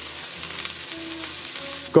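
Minced ginger and garlic sizzling in hot oil in a stainless steel frying pan, a steady crackle.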